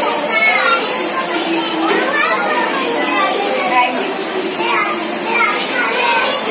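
A group of young children talking at once, a steady overlapping chatter of high voices with no single clear speaker.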